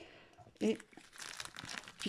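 Sheets of scrapbooking paper rustling as they are handled, starting about a second in.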